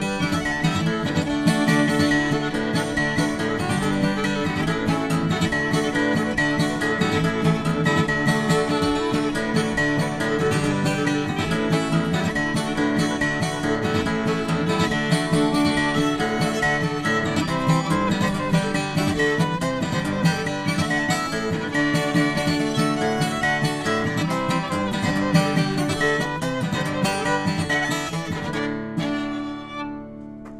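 Fiddle and acoustic guitar playing an old-time fiddle tune together, the guitar strumming a steady rhythm under the fiddle melody. About a second before the end the tune stops and a last chord rings out.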